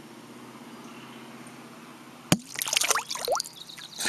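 A SeaTag Mod satellite tag's release mechanism fires with a sharp pop about two seconds in. Splashing follows as the tag jumps clear of the water in a bucket and falls back in.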